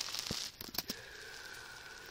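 Computer keyboard keys clicking in a short, irregular run as a terminal command is typed, over a light hiss.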